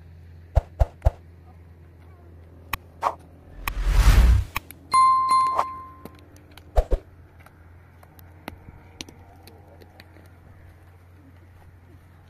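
Subscribe-button overlay sound effect: a few sharp clicks, a loud whoosh about four seconds in, then a bell-like notification ding, with two more clicks a little later. A low steady hum runs underneath.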